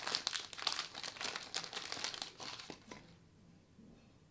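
Clear plastic bag crinkling as hands pull cardboard-backed cards in rigid top loaders out of it. The crinkling runs for about three seconds, then dies away.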